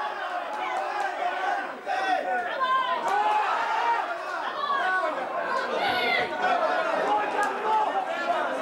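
Field sound of a football match in play: several voices calling and chattering at once across the pitch, at a steady moderate level, with one louder shout about six seconds in.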